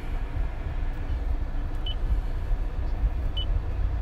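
Steady low rumble inside a car cabin, with two short high beeps from the infotainment touchscreen, about two seconds in and again near the end.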